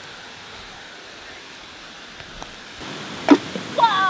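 Steady rush of a river and small waterfall, louder from about three seconds in. A child's voice briefly near the end.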